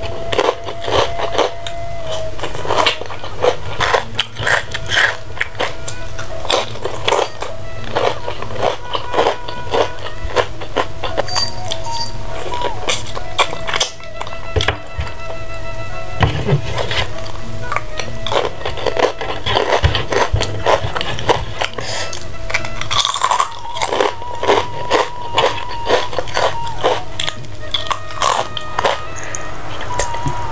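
Background music with steady held notes, over close-up eating sounds: crunchy bites and chewing of food eaten by hand.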